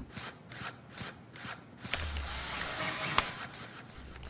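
Small toy robot's mechanism clicking and rasping: a run of quick clicks, about four a second, then a longer grinding rasp with one sharp click near the end.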